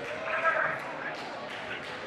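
Gymnasium crowd ambience: murmured chatter and scattered voices echoing in the hall, with a few faint knocks, as play stops for an out-of-bounds inbound.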